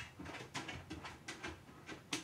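Ensoniq EPS Classic sampler playing short drum-sample hits from its keyboard, about three or four quiet hits a second, sampled at its lowest rate of 6.25 kHz, where the sound turns lo-fi and digitally distorted.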